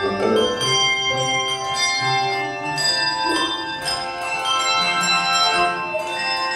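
A handbell choir playing music: several notes struck each second in overlapping chords, each bell ringing on after it sounds.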